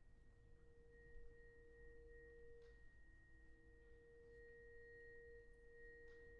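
Very faint, sustained pure musical tones in a hushed passage of a brass band piece. A middle note is held and sounded again twice, and a fainter high note enters about a second in and rings steadily beneath it.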